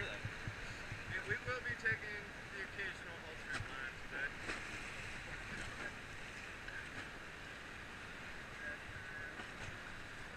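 Steady rush of river rapids around an inflatable raft, with wind on the microphone. Faint voices in the first half.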